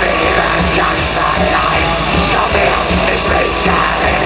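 Metal band playing live at full volume: electric guitars, bass and drums in a steady, dense wall of sound with a regular beat.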